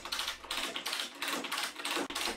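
Ratchet strap tensioner being cranked, its pawl clicking rapidly, about six to eight clicks a second, as it tightens the strap that drags the press bed under the roller.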